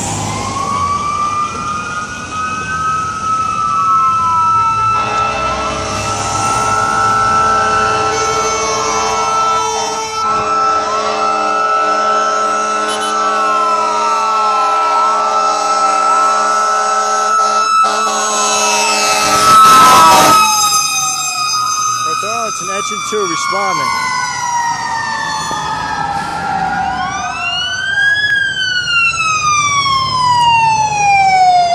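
Fire engine siren wailing up and down in repeated sweeps as the truck approaches, with a long, steady air horn blast over it. The sound is loudest as the truck passes about two-thirds of the way in, and the siren keeps sweeping afterward.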